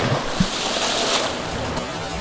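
Pool water rushing and churning right after a diver's entry splash, loudest in the first second and easing off, with a short low thump about half a second in.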